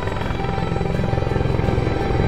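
Background music with steady held tones, and under it a helicopter flying over, its rotors pulsing quickly and growing slightly louder.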